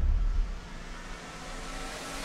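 Trailer score: a deep bass swell fading out in the first half second, leaving a quiet, sustained hum with faint held tones.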